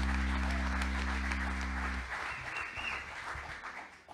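Congregation applauding at the end of a worship song. The song's held final chord stops about two seconds in, and the clapping dies away near the end.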